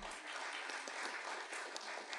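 Audience applauding steadily, fairly faint in the recording.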